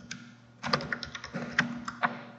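Computer keyboard being typed on, about half a dozen separate keystrokes from shortly after the start to near the end.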